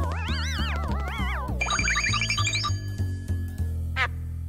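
Cartoon underscore music over a steady bass line. For the first second and a half a high tone wavers and slides up and down, then a quick rising run of bright, bell-like notes follows. A short sharp knock comes just before the end.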